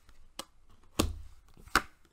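Tarot cards being handled and slapped down on a table: a light tap, then two sharp slaps about a second in and near the end.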